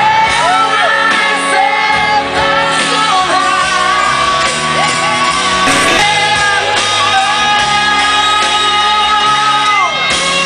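Live rock band playing loud amplified music with a lead vocal, heard from within the audience, with crowd members singing and shouting along.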